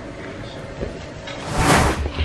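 Quiet room tone, then about one and a half seconds in a brief rustling swell with low thumps: handling noise from the camera being picked up and moved.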